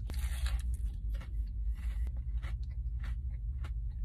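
Biting into and chewing a fried chicken sandwich with very crunchy breading: a run of short, irregular crunches close to the mouth, over a low steady hum.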